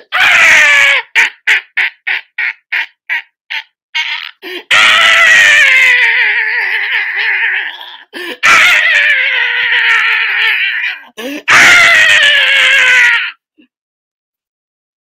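A man's loud, high-pitched screaming and laughing: a short cry, then a quick run of about a dozen short laughing bursts, then three long, wavering shrieks that stop shortly before the end. This is excited shrieking, without words.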